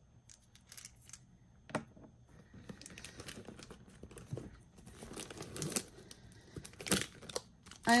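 A hand rummaging through a small handbag, its contents rustling, and a soft plastic pack of wet wipes crinkling as it is pulled out. Two sharp clicks, one about two seconds in and one near the end.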